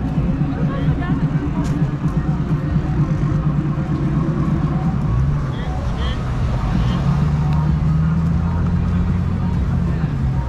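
Street noise with a low rumble and indistinct voices in the background; from about five seconds in, a car engine hums steadily as a car crosses close by.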